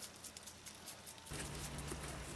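Faint soft squishing and patting of wet paper clay handled and squeezed by hand. Just over a second in, this gives way abruptly to a steady low hum.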